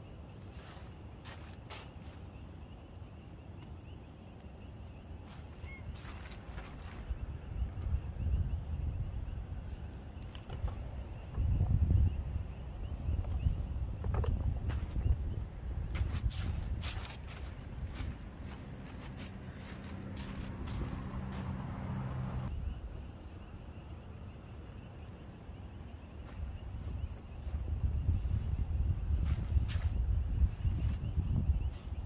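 Gear being carried and set down in a tent: footsteps, rustling and irregular knocks and clicks of items being handled. A steady, faint, high insect chirring goes on behind it.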